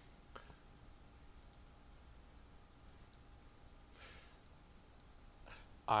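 Faint, scattered clicks over low room tone, the clearest about half a second in, with a soft hiss around four seconds in. A voice begins right at the end.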